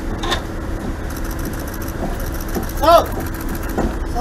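A patrol boat's engine idling with a steady low rumble, under scattered voices. About three seconds in, a short loud call rises and falls in pitch.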